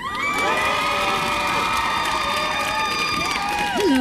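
Sitcom studio audience cheering and whooping, many voices holding long rising 'woo' calls at once, greeting a guest star's entrance; it dies away near the end.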